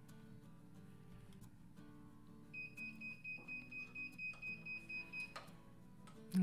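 Heat press controller's timer beeping, a high electronic tone pulsing about four times a second for nearly three seconds, signalling that the 60-second pressing cycle is done.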